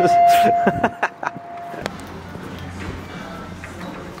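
A steady electronic beep tone held for about two seconds over voices, cutting off near two seconds in, followed by quieter indoor background with a low hum.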